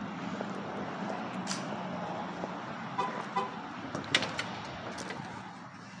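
Outdoor background noise with a steady low hum, then a short run of beeping tones about three seconds in and a few sharp clicks a second later.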